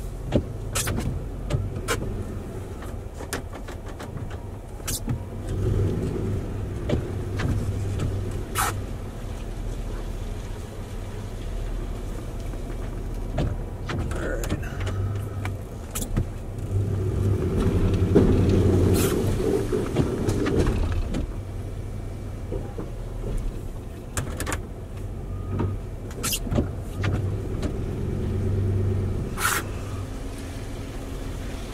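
Plow truck's engine running inside the cab while the blade pushes snow up the driveway, working louder for a few seconds past the middle as the load builds. Occasional sharp clicks and knocks over the engine hum.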